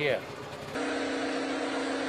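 A steady, even hum at one low-middle pitch, starting about three-quarters of a second in and holding level.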